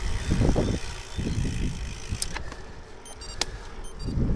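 Riding noise on a bicycle-mounted action camera: irregular low wind rumble on the microphone with tyre and road noise, easing off after about two seconds, and one sharp click about three and a half seconds in.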